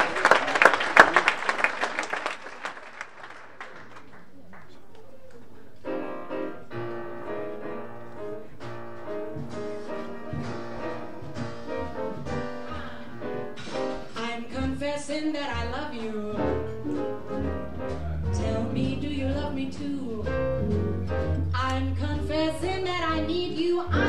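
Audience applause dying away over the first few seconds, then a jazz piano intro from about six seconds in. A walking bass line and the rest of the band come in around fifteen seconds in.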